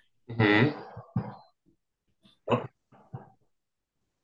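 A person clearing their throat over a video call, one burst of under a second starting about a quarter second in, followed by a few brief voice sounds. The sound cuts out to silence near the end.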